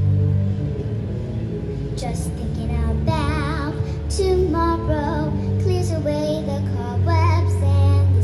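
A young girl singing a show tune into a microphone over musical accompaniment, amplified through a small PA speaker, with a wavering vibrato on held notes a few seconds in and again near the end.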